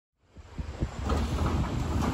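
Wind rumbling on the microphone outdoors, starting after a brief silence and building up in level.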